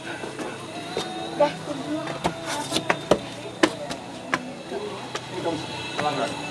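People talking in the background, with a scatter of sharp, irregular clicks and taps.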